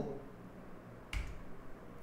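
Quiet room tone broken by a single short, sharp click a little over a second in.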